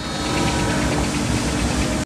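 A steady low rumble with hiss, with no music.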